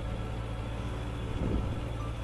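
Sport motorcycle engine running at low speed while the bike rolls along, a steady low hum.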